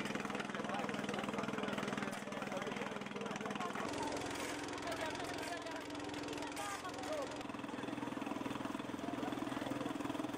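An engine running steadily, its pitch stepping up about four seconds in, with people talking over it.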